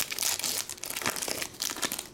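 Metallic plastic wrapper of a Panini Prizm basketball card pack being torn open and crinkled by hand, a dense, irregular crackling.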